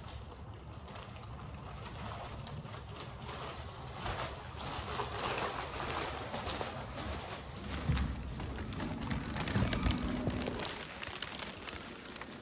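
Low wind rumble on the microphone, then from about four seconds in, sandal footsteps and plastic grocery bags rustling as they come close, with a few low thumps and handling knocks later.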